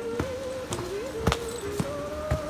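Footsteps walking on a dirt forest trail, a dull thud about twice a second. Background music with a single thin, wavering melody line runs underneath.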